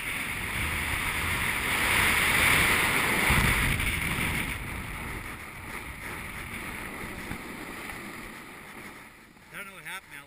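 Snowboard sliding and scraping over packed snow, with wind rushing on the camera microphone, loudest about two to four seconds in and then dying away as the rider slows to a stop. A voice starts near the end.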